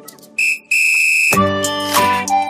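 Two whistle blasts, a short one and then a longer one held for about half a second, sounding in a gap in the background music. The music comes back in just after the second blast.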